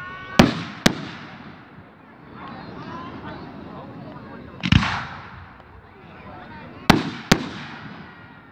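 Aerial fireworks shells bursting: two sharp bangs about half a second apart near the start, a deeper boom a little past the middle, and two more sharp bangs close together near the end.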